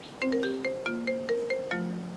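Mobile phone ringing with a marimba-style ringtone: a quick melody of short, bright notes that starts a moment in and ends its phrase on a lower held note near the end.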